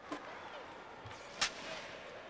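Rink noise from an ice hockey game: a low, even background of arena sound with one sharp crack about one and a half seconds in.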